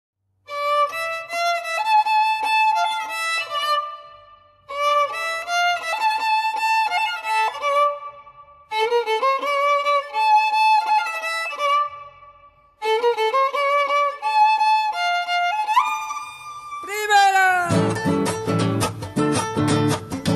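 Chacarera introduction on solo violin: four melodic phrases, each about four seconds long with brief pauses between them. The last phrase ends in a falling slide, and at that point guitars and the rest of the folk group come in together.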